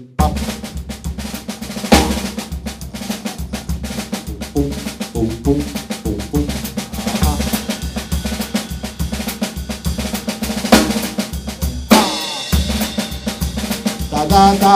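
Drum kit playing a paso doble groove: snare strokes in a drag paradiddle sticking over a steady bass-drum beat, with cymbals, and a melody line heard in places. The low beat drops out briefly near the end.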